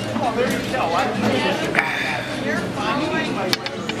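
Voices talking at a busy restaurant table, not clearly worded, with a couple of short sharp clicks, one about two seconds in and one near the end.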